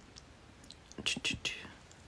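A woman whispering a few soft syllables about a second in, then quiet.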